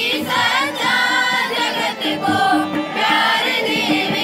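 A group of girls singing a prayer song together into a microphone, with hand-drum accompaniment.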